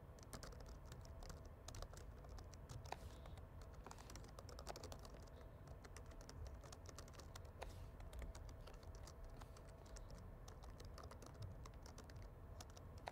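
Faint typing on a computer keyboard: quick, irregular key clicks as code is entered.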